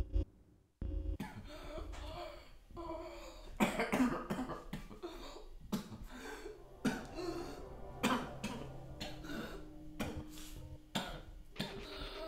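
Men coughing and grunting in irregular bursts while hauling a heavy bundle, over background music.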